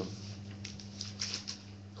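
Quiet pause in a room: a steady low electrical hum with a few faint soft ticks.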